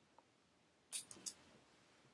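Two short snips of small metal embroidery scissors cutting loose yarn ends, about a second in, a third of a second apart; otherwise near silence.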